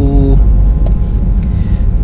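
Steady low rumble of road and engine noise heard inside the cabin of a moving Honda car at about 49 km/h.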